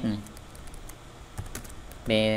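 Typing on a computer keyboard: a few separate keystrokes, mostly in the second half.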